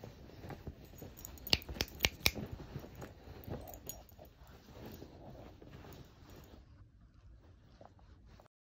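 Small dog rooting and digging in a duvet on a bed: soft fabric rustling and scuffing, with three sharp clicks close together about a second and a half to two seconds in.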